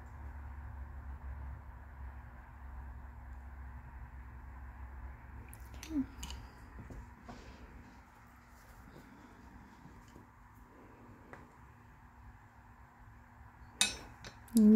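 Quiet room hum with a few light taps and handling sounds as a paintbrush is set down on a paper-towel-covered table and a makeup sponge is picked up; the loudest tap comes about six seconds in, another just before the end.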